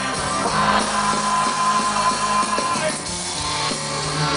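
A live rock band playing an instrumental stretch of a song on acoustic guitars, upright bass and percussion, loud and continuous, with no singing.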